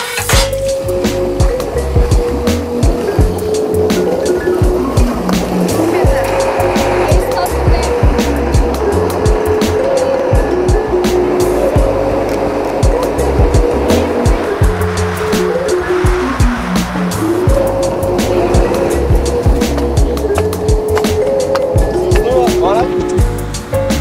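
Background music with a steady drum beat, a pulsing bass line and a held melody.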